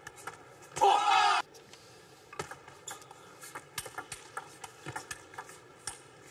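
Celluloid-type table tennis ball clicking off rubber-faced bats and the table during a rally, in short irregular ticks. A loud shout cuts across them about a second in.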